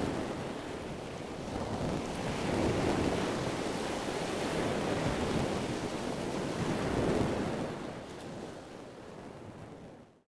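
Ocean waves washing in a steady rush that swells and eases twice, fading out near the end.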